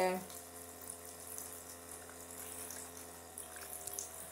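Small tabletop water fountain trickling steadily at a low level, with a faint steady hum underneath.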